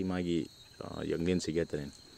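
A man's voice speaking in two short bursts, with a steady high-pitched insect trill underneath.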